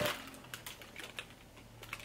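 Faint, irregular light clicks and crinkles of tissue paper and shoe packaging being handled as a sneaker is unwrapped.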